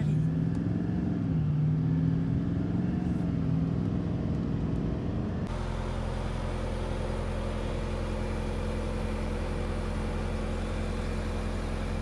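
Truck engine heard from inside the cab while driving, its note slowly rising and falling. After a sudden cut about five and a half seconds in, a steady, unchanging engine idle.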